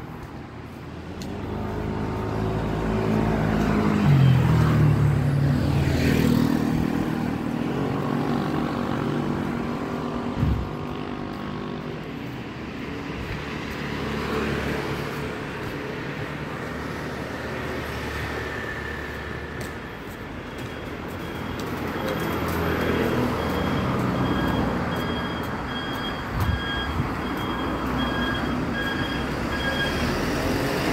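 Street traffic: motor vehicles pass close by. One swells a few seconds in, its engine pitch dropping as it goes past, and another passes a little after twenty seconds in.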